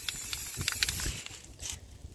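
Aerosol spray-paint can hissing as it sprays black paint, cutting off about a second and a half in, then one short hiss near the end.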